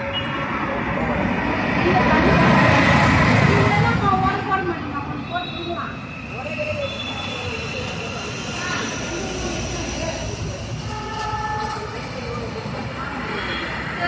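Ambient background with indistinct voices and the rumble of a passing vehicle, which swells about two seconds in and fades by four.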